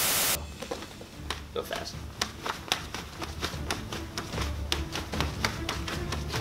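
A brief burst of hiss at the very start, then a quick, irregular run of sharp slaps and taps, several a second: open hands and forearms striking arms as punches are parried in a fast karate blocking drill.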